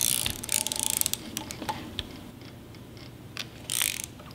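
Ratchet wrench clicking as it is swung back and forth, turning a HISUN V-twin engine over by hand. It opens with a fast run of clicks, then comes down to slower, scattered clicks, with a short burst near the end.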